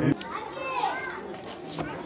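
A man's speech cuts off abruptly just after the start, followed by several voices chattering over one another, some of them high-pitched.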